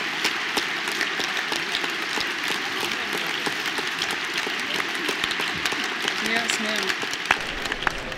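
A large audience applauding, dense and steady clapping that thins out near the end.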